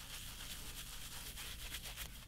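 Shaving brush being worked in lather on a cheek, a faint, rapid, scratchy rubbing of bristles.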